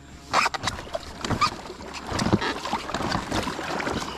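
Water splashing and sloshing around a homemade foam-board raft, with irregular knocks and thuds, the loudest splash about half a second in.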